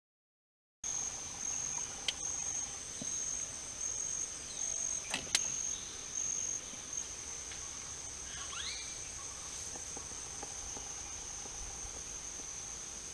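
High-pitched forest insect chorus (crickets or cicadas). It sings in a series of short pulses for the first several seconds, then holds as one continuous drone. A couple of sharp clicks come about five seconds in, and a short rising chirp near the middle.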